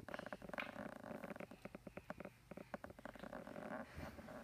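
A toddler making low, creaky grunting sounds while straining, heard as a quick rattle of short clicks with a brief pause about halfway through.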